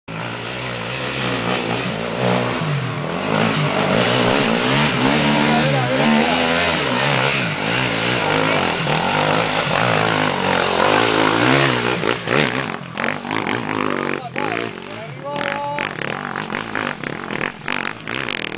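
KTM 530 EXC single-cylinder four-stroke enduro motorcycle revving hard on and off, its engine pitch rising and falling. The engine dies away about twelve seconds in, leaving people's voices.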